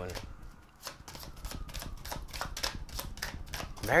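Tarot cards being shuffled by hand: a quick run of light clicks as the cards slap against one another.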